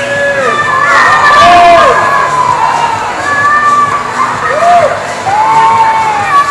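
Crowd of spectators cheering and shouting, with several voices in long, high shouts that rise and fall and overlap one another.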